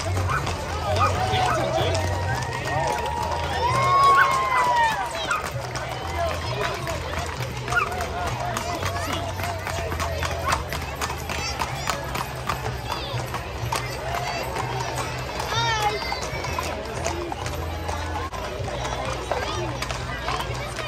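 Horses' hooves clip-clopping on an asphalt street as a line of ridden horses passes close by, an irregular run of sharp clicks, with crowd voices and music around them.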